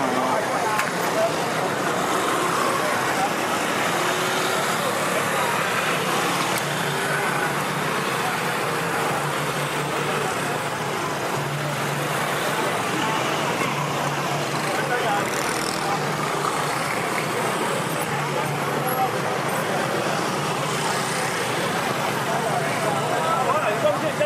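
Motor scooters passing slowly in a steady stream, their small engines running, with people talking nearby.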